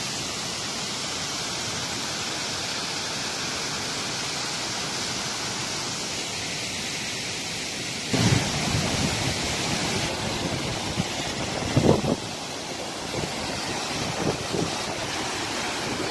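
Steady rushing noise of a distant mountain waterfall. About halfway through it turns louder and rougher, with gusts of wind buffeting the microphone.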